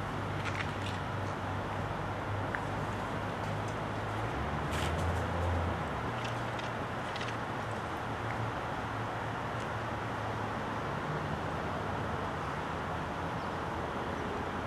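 A vehicle engine idling with a steady low hum, briefly deeper and louder about five seconds in, with a few faint clicks over it.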